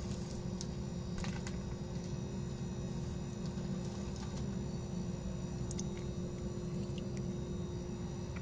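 Steady low background hum with a constant faint tone, broken by a few faint clicks.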